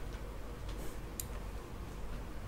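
A few faint, sharp clicks at a computer, scattered irregularly over a steady low hum.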